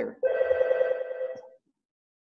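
A single electronic ringing tone with a fast trill, lasting just over a second and then stopping.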